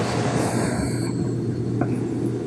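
Steady rushing noise over a low steady hum, with no speech.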